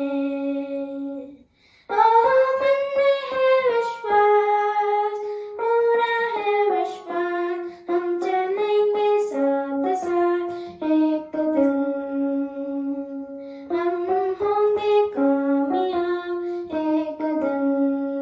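A boy singing a song while accompanying himself on a small electronic keyboard, in held, stepping notes. There is a short break about a second and a half in, then the song picks up again.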